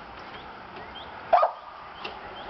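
A dog barks once, a single short bark about a second and a half in.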